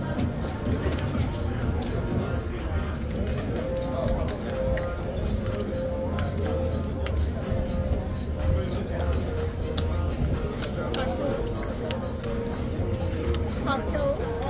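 Casino background ambience: music and a murmur of distant voices, with scattered light clicks as playing cards are dealt onto the table felt.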